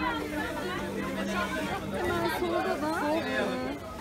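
Crowd chatter: several people talking at once, overlapping voices with no single clear speaker.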